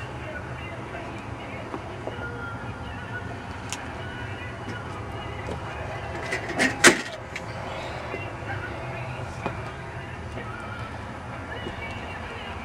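Steady low background rumble with a few light clicks, and a sharp knock about seven seconds in.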